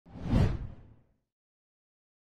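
A single whoosh sound effect, heavy in the bass, swelling and dying away within about a second.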